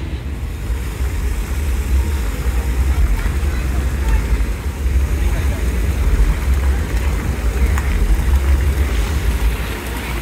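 Wind buffeting the phone's microphone: a steady, gusty low rumble.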